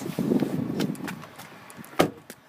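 Handling and rustling noise on a phone's microphone as someone climbs out of a car, with scattered light clicks and one sharp knock at the very end.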